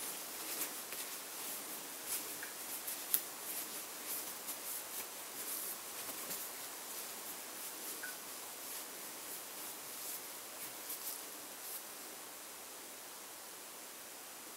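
Paper towel crinkling and rubbing as a small stainless steel center square is wiped dry by hand, with light irregular crackles and one sharper tick about three seconds in. The rubbing stops near the end, leaving faint hiss.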